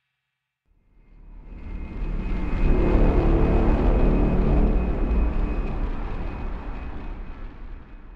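A deep rumbling swell, a sound effect that comes in about a second in, is loudest after a few seconds, then slowly fades away, carried under an animated logo.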